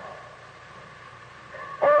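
A man preaching pauses, leaving only faint steady background hiss, and his voice comes back near the end with "Oh".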